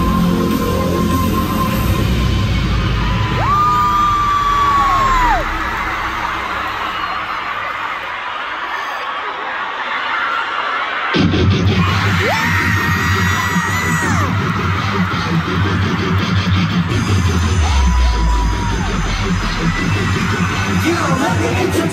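Live arena concert recorded from the stands: loud amplified pop music with a heavy, distorted bass and long held high notes, over a screaming crowd. The sound changes abruptly about 11 seconds in as one clip gives way to the next.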